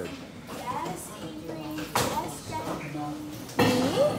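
Indistinct chatter of students' voices in a classroom, with a sharp knock or clatter about halfway through and a louder voice near the end.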